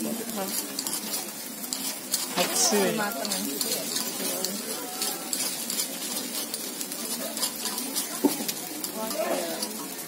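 Takoyaki batter sizzling on a hot takoyaki griddle, with light clicks and scrapes of a metal pick turning the balls in their cups.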